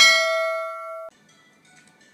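A single bell-like 'ding' sound effect, a struck chime of several tones that rings, fades and then cuts off sharply about a second in.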